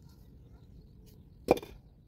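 A single sharp knock about one and a half seconds in, followed by a brief clatter: stones knocked together as they are placed by hand.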